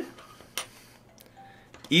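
A single small, sharp plastic click about half a second in, then faint handling ticks, as fingers work an action figure's head on its freshly fitted neck joint.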